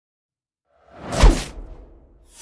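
A whoosh sound effect: one sweep that swells about a second in, slides down in pitch into a low thump, and then fades away.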